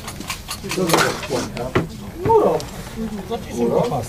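A man laughing and people's voices, with a couple of sharp knocks about a second and two seconds in.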